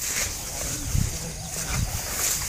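Footsteps and rustling as someone pushes through tall, dense undergrowth, over a steady high-pitched drone.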